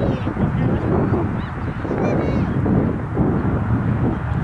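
Wind buffeting the microphone, a steady low rumble, with several short, faint high calls from the distance.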